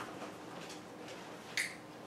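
Faint room tone with a short click at the start and a sharper, louder click about one and a half seconds in.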